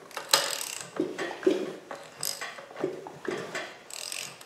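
Ratchet wrench turning a Land Rover 300Tdi engine over by hand, clicking in a series of short strokes about every half second.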